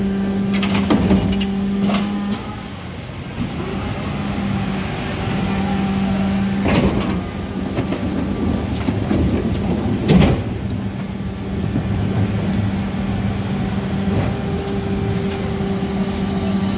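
Mercedes-Benz Econic refuse lorry with a Geesink body, running with a steady low hum that briefly drops out early on. A few sharp knocks and clanks come from the truck about a second in, around seven seconds and around ten seconds.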